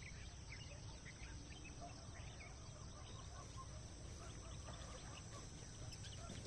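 Faint outdoor field ambience: scattered short bird calls over a steady low rumble of wind.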